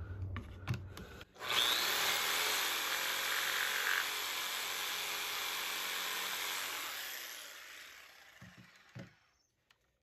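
Corded jigsaw starts about a second and a half in and cuts steadily through the last uncut bit of a notch in a softwood board, then the motor winds down over the last few seconds. A couple of light knocks follow near the end.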